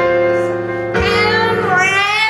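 A woman singing a held, wavering note over chords on an electric stage piano, a new chord struck about a second in.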